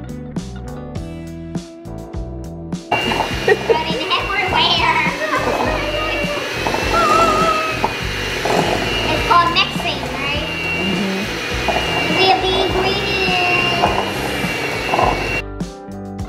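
Electric hand mixer running in a glass bowl of cookie dough, a steady motor whine with the beaters churning, with children talking over it. Guitar background music plays before the mixer starts about three seconds in and comes back after it stops near the end.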